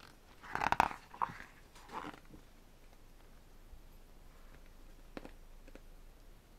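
Paper pages of a large album photobook being turned by hand. The loudest rustle comes about half a second in, with softer rustles near two seconds and a couple of light taps near the end.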